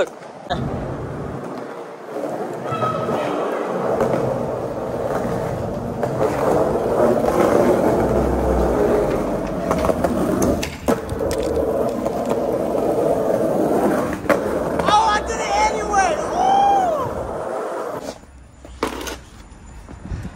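Skateboard wheels rolling over rough concrete, a steady rumble broken by a few sharp clacks of the board, until the rolling stops near the end.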